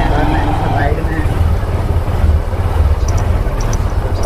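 Motorbike riding through a narrow street: a steady low engine rumble mixed with wind buffeting the microphone, with faint voices in the first second.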